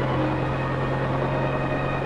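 Helicopter in flight, its engine and rotor giving a steady drone.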